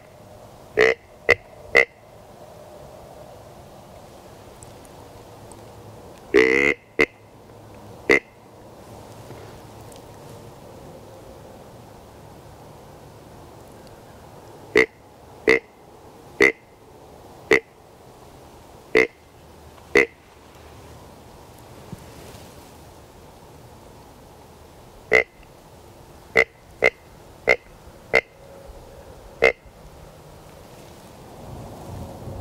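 Deer grunt tube blown in short grunts, imitating a whitetail buck to draw deer in. There are three quick grunts about a second in, a longer grunt about six seconds in, then two strings of about six short grunts roughly a second apart, in the middle and near the end.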